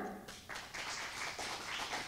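Light applause from a small audience, starting about half a second in, right after a guest's name is announced.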